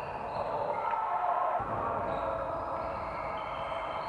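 Basketball game on an indoor court: a ball bouncing on the floor once, about one and a half seconds in, amid steady high squeaking tones.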